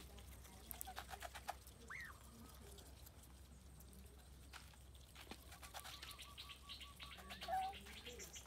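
Geese and goslings pecking grain from feed bowls: faint scattered clicks of bills on the bowls and grain. A short rising-then-falling bird call comes about two seconds in, and a brief louder call near the end.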